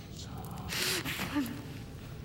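A person's sharp, breathy gasp about a second in, with short, muffled vocal sounds around it, over a low background rumble.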